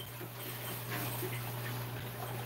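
Low steady hum with a faint hiss: the room tone of a fish room full of running aquarium equipment.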